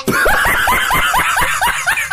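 High-pitched comic laughter, a fast, even string of short snickering notes at about six a second.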